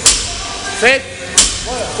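Barbell loaded with bumper plates knocking down onto a rubber gym floor twice, about 1.3 seconds apart, one sharp knock for each deadlift rep.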